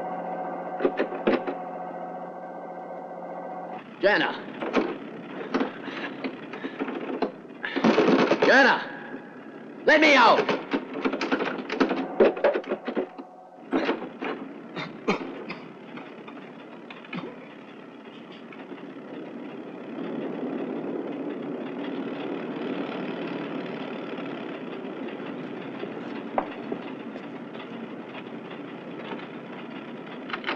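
Wordless vocal sounds, breaths and sighs, over a steady drone for the first half. Then a car engine runs steadily in a closed garage, with a few coughs.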